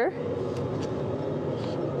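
Steady low whir of the International Space Station's cabin ventilation fans and air circulation, with a couple of faint clicks.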